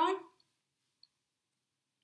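Near silence after a short spoken word, broken by one faint, brief click about a second in.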